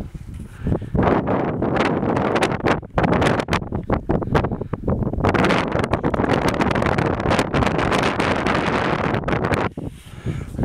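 Wind buffeting the microphone in strong gusts, building about a second in and dropping away briefly near the end.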